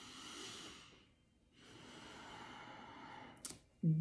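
One slow, deep breath through the nose with the mouth closed and the tongue on the palate: a soft inhale of about a second, a short pause, then a longer exhale. A small mouth click comes near the end.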